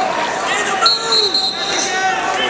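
Shouting voices across a busy wrestling arena, with a short shrill blast of a referee's whistle, held for under a second, starting with a sharp click just under a second in; thumps of wrestlers on the mats underneath.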